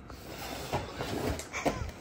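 Cardboard snack boxes being shifted and lifted out of a fabric wagon: soft rustling with a few light knocks.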